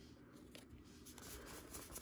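Near silence, with faint rustling and ticking of Pokémon trading cards being handled and sorted by hand.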